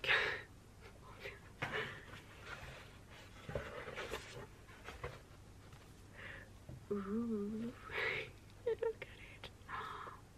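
A woman laughing breathily and panting with excitement in short bursts, with a brief wavering hum about seven seconds in.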